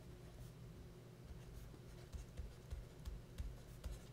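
A stylus writing by hand on a tablet: faint, irregular scratches and light taps of the pen tip as a word is written out.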